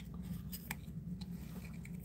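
Faint clicks and light snips of small scissors working at the cut in a leathery snake egg while fingers handle the shell, over a steady low hum.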